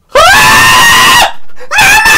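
Two loud, high-pitched screams. The first swoops up at its start and is held for about a second; the second begins near the end.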